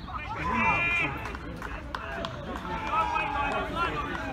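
Shouts and calls from players and spectators at a football match, several voices overlapping, loudest in the first second and again about three seconds in.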